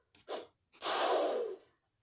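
A person's breath close to the microphone: a short puff, then a longer breathy exhale lasting under a second.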